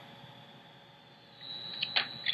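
A high-current bench power supply being switched on: low steady hum, then about one and a half seconds in a faint high whine comes up, with a single sharp click near the end.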